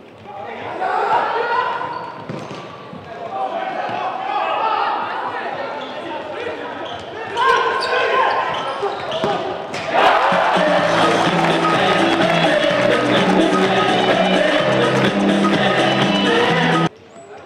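Echoing voices shouting and ball knocks on the floor of a futsal hall. About ten seconds in, loud goal music starts over the hall's PA after a goal is scored.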